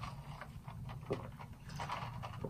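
Faint sipping of iced tea through a plastic straw, with a few soft short sounds.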